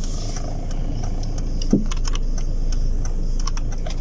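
Car interior noise while the car is being manoeuvred into a parking spot: a steady low engine hum with a few faint clicks and rattles.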